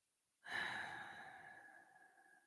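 A person sighing, one soft breath out close to the microphone that starts about half a second in and fades away over a second or so.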